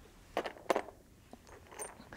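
A few light clicks and clinks of small stone pieces knocking together as they are handled and picked up, two sharp ones about half a second in and a fainter cluster with a brief ring near the end.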